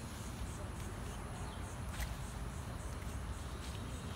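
Quiet outdoor ambience: insects chirping in a faint, regular high-pitched pulse over a low steady rumble on the phone microphone, with a single sharp click about halfway through.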